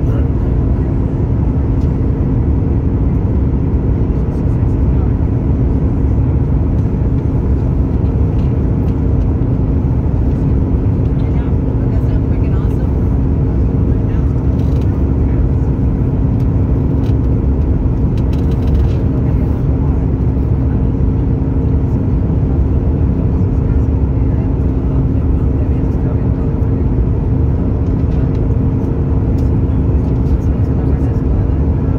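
Steady cabin noise inside a Boeing 737 MAX 9 on its descent, heard from a window seat over the wing: a loud, even low rumble of the CFM LEAP-1B engines and airflow, with a steady hum running through it.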